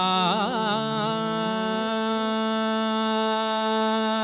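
Male vocalist singing a wordless bhajan alaap: a quick ornamented phrase sliding up and down in pitch, then one long held note, over a steady drone.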